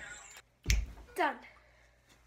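A single sharp snap about two-thirds of a second in, right after a brief dropout in the sound, followed by a short spoken word.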